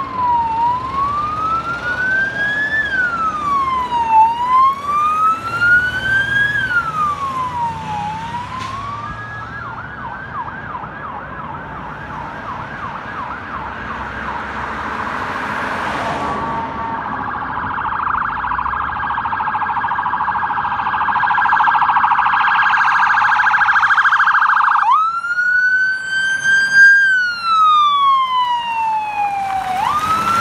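Electronic emergency-vehicle sirens. A wail rises and falls every couple of seconds, then switches about nine seconds in to a much faster yelp and rapid warble that grows louder. Near the end a new wail starts abruptly, from a fire department ambulance.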